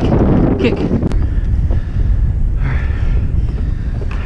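Wind buffeting the microphone, a steady low rumble, with a sharp click about a second in.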